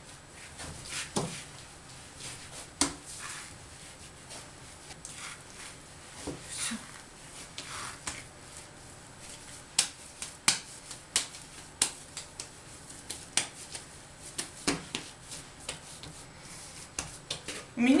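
Hands pressing and patting a soft ball of dough on an oilcloth tabletop, then plastic cling film crinkling and rustling as it is pulled out and spread, making many small scattered clicks that grow busier in the second half.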